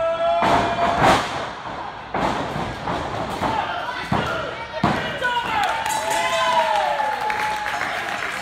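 Wrestlers' bodies hitting the ring canvas: several heavy thuds, the loudest about a second in, then others about two, four and five seconds in, amid voices shouting from the crowd.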